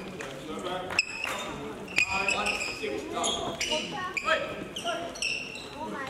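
Badminton hall ambience: sharp racket hits on shuttlecocks, the clearest about one and two seconds in, with short squeaks of court shoes on the floor and voices echoing in the hall.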